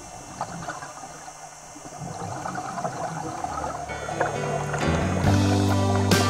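Background music: a quieter stretch with faint crackling after one passage fades, then new music builds with sustained low notes and sharp beats near the end.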